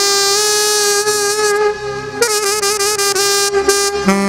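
Music led by a wind instrument holding one long, bright note, briefly dipping in loudness about two seconds in.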